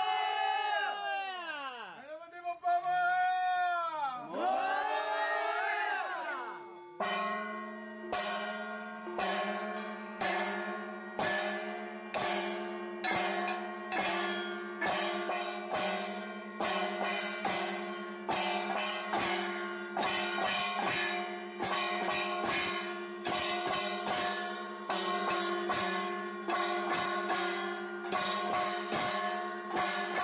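Metal gong plates and a brass hand bell rung for an aarti. For the first few seconds the ringing tone wavers up and down. From about seven seconds in, the gongs are struck in a steady rhythm, about one and a half strikes a second, over a continuous ringing tone.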